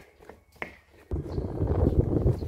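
A few light footsteps on a hard floor, then, about a second in, a sudden uneven low rumble of wind buffeting the microphone outdoors.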